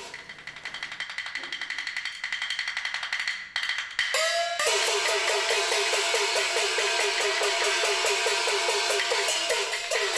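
Peking opera percussion ensemble: a fast roll of light clapper and drum strokes, then from about four and a half seconds in, gongs and cymbals join in a louder, fast, even beat.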